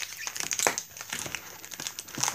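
Small cardboard toy box and its packaging handled and pulled open, crinkling with a string of short crackles and rustles.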